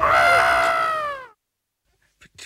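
A high-pitched excited scream that slides down in pitch for about a second, then cuts off abruptly.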